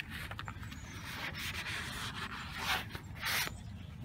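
Paper towel rubbing over the hard plastic of a black pond shell around a PVC pipe fitting, drying off leftover water in short wipes, the loudest near the end.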